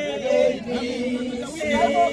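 A group of elderly women singing a chanted song together, their voices holding long notes.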